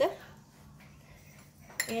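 Metal spoon clinking against a small glass bowl of sauce near the end, as stirring begins.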